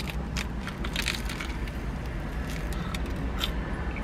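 Biting into and chewing crisp toasted sourdough avocado toast close to the microphone: a scattering of short crunches.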